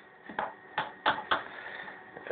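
A few short, sharp clicks, about four within a second.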